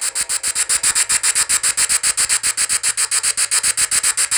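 Ghost-hunting app spirit box sweep: static chopped into rapid, even pulses, about eight or nine a second, with a high hiss on top.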